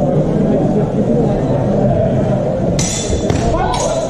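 Steel HEMA training swords clashing in two short, sharp bursts near the end, over a steady din of voices in a large sports hall.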